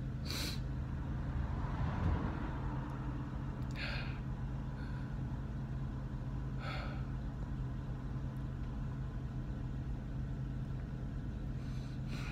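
School bus engine idling with a steady low hum. Three short, sharp breaths come from the driver, at about half a second, four seconds and seven seconds in.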